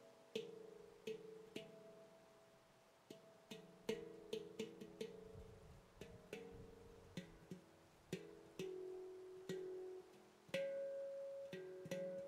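Veritas Sound Sculpture stainless-steel handpan in F#3 Pygmy, 18 notes, played softly and slowly by hand. Single fingertip strikes come at an uneven pace, each note left ringing, with a louder note near the end.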